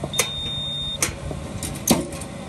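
Cricket bowling machine running with a steady hum, giving a few sharp clicks and firing a ball with a loud crack near the end.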